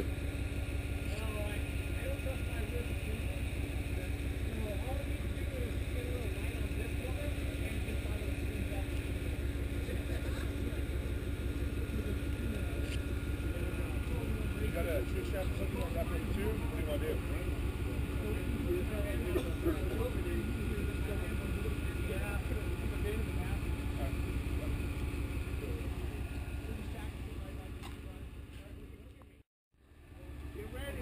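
Rock-crawler buggy's engine idling steadily, with people talking and a laugh in the background. The sound fades out shortly before the end.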